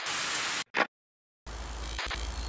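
TV-static noise effect for a channel logo sting, in bursts: a hiss that cuts off about two-thirds of a second in, a short, sharper burst just after, half a second of silence, then the static comes back.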